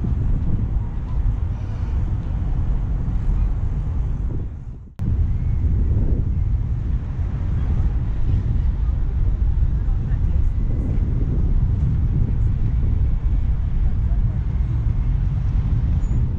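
Wind buffeting the microphone, a loud steady low rumble that cuts out briefly about five seconds in.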